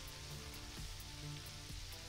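Faint background music with soft sustained notes, over a low hiss of chicken frying in a skillet of hot oil.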